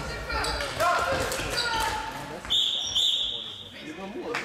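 Floorball play in a sports hall: players shouting and stick and ball clatter on the floor, then a referee's whistle blown twice in quick succession, the second blast longer, signalling a goal.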